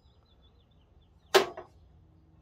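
A single sharp clink of a metal hand tool being handled, a little over a second in, with a brief ring after it. The rest is faint room noise.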